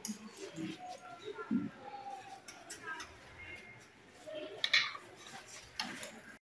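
Light clinks and scrapes of a metal spoon against a beaker while baking soda powder is handled and scooped, with a louder pair of clicks near the end. Faint voices murmur in the background.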